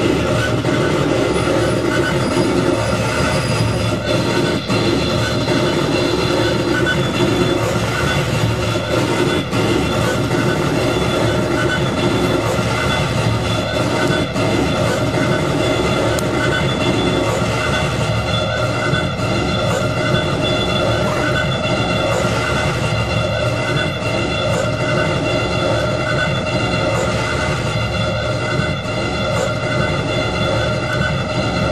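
Live electronic music from a reacTable, a tabletop modular synthesizer: a dense, noisy drone with several steady high tones layered over it, which come in a few seconds in.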